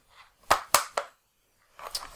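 IBM ThinkPad 701C being shut: three sharp plastic clicks within about half a second, a little way in, as the lid comes down and the butterfly keyboard halves slide back together.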